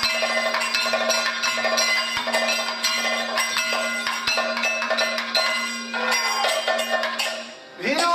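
Kathakali accompaniment music: a steady rhythm of ringing metal percussion strikes over a held drone, with a voice gliding in near the end.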